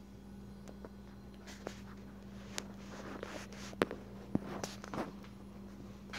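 Handling noise of a phone being turned around and moved: scattered sharp clicks and short rustles, over a faint steady hum.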